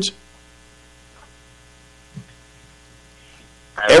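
Faint, steady electrical mains hum with many evenly spaced overtones, the recording's background hum heard in a gap in the talk, with a brief faint sound about two seconds in. A man's voice comes back near the end.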